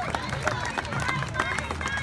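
A large formation of troops marching, calling a cadence in unison over the tramp of many boots on pavement.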